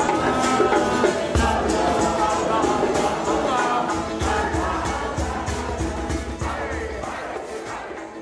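Music: a group of voices singing together over a steady beat, slowly fading toward the end.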